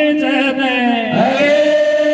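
Male voices singing a Meena Waati folk song into microphones, in long held, wavering notes.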